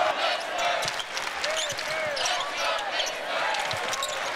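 Arena game sound on a hardwood basketball court: a basketball being dribbled, with several knocks, short sneaker squeaks and a steady crowd hum behind them.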